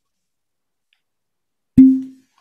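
A cork pulled from a bourbon bottle with one crisp pop near the end, leaving a brief hollow ringing tone.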